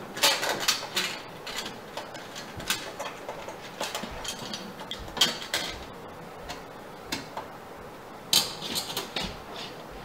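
Sheet-metal wall mounting plate of an over-the-range microwave clinking and scraping against the wall as it is held up and shifted into place. Irregular light clinks and scratches, in clusters at the start, around the middle and near the end.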